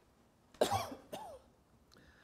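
A person coughs and clears their throat: two short sounds, the first a sudden cough about half a second in, the second a briefer throat-clearing with a falling pitch.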